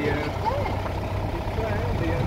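Safari vehicle's engine running with a steady low rumble as it drives along, with people's voices talking in the background.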